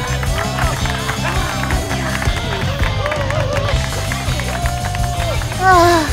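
Background music with several voices cheering and exclaiming and some hand clapping; a louder falling cry comes shortly before the end.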